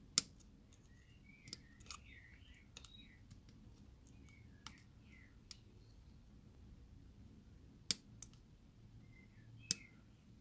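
Sprue nippers for plastic snipping moulded detail off a plastic model kit's cockpit tub: a series of sharp clicks at irregular intervals, the loudest right at the start.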